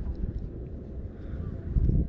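Wind rumbling on the microphone, a low steady buffeting that swells louder near the end.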